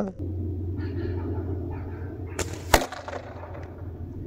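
One short, sharp clack of a spring-powered airsoft sniper rifle (ASG Urban Sniper) about two and a half seconds in, over a low steady hum.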